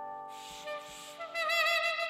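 Saxophone playing the melody: a held note with vibrato comes in about two-thirds of the way through, over a sustained backing chord that is fading.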